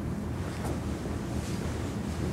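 Steady low rumble of room noise, with no speech.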